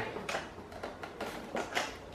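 A few faint, short clicks and scrapes of the pedestal fan's plastic head housing being worked down onto its metal pole by hand, the fitting sliding in only a little.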